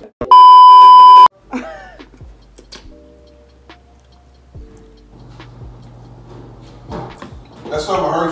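An edited-in censor bleep: a loud, steady 1 kHz tone about a second long, starting just after the beginning, masking a word.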